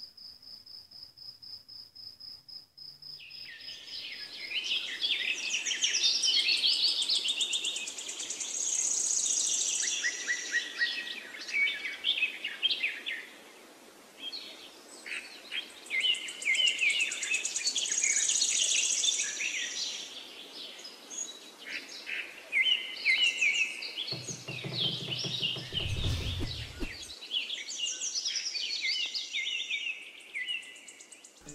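Crickets chirping in a steady pulsing trill for the first few seconds, then a dense chorus of birds chirping and singing that runs on to the end. A brief low rumble comes in about three-quarters of the way through.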